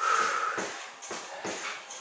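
A man breathing hard while exercising, with soft taps and scuffs of a trainer on the floor as his back foot steps in and out.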